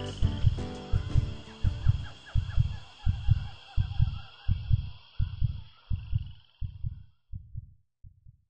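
Closing film music: a low drum beating in heartbeat-like pairs, about one pair every three-quarters of a second, under faint high ringing tones and chirps, fading out near the end.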